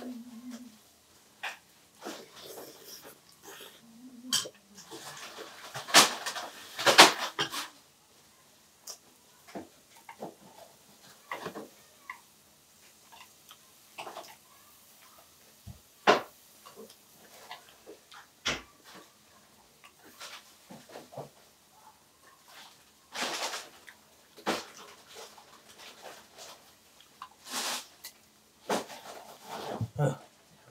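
People eating at a table: wet chewing and slurping mouth sounds mixed with scattered light clicks of metal chopsticks and tongs against plates and the grill pan, with a few louder, noisier bursts.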